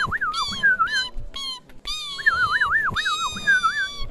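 Bird-like warbling whistle calls giving voice to the animated bird: short wavering, trilling phrases repeated several times with brief gaps.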